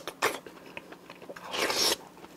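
Close-miked mouth sounds of a person eating a raw oyster: wet slurping and chewing, with a short hissy burst just after the start and a longer one near the end.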